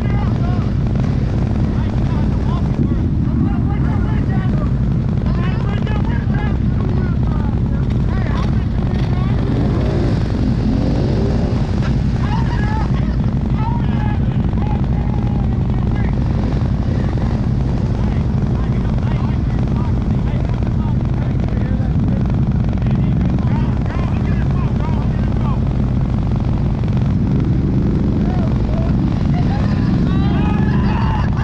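ATV engine idling steadily, a low even drone, with distant voices talking over it.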